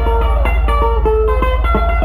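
Live band playing: electric lead guitar picking a fast run of single notes over a steady bass line.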